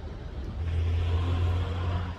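A low rumble with a rushing noise that swells about half a second in and drops back near the end: a motor vehicle going past.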